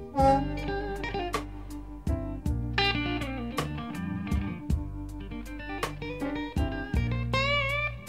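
Slow blues played by a band with no singing: a lead guitar plays bent, wavering notes over sustained bass and a steady drum beat.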